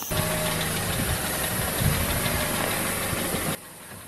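Car engine running close by, a steady noisy hum that cuts off suddenly near the end.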